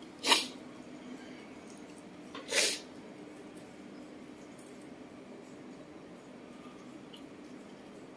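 Two short, sharp sneezes, about two seconds apart, over a faint steady hum.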